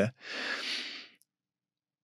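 A man's breath at a close microphone, a soft rush of air lasting about a second.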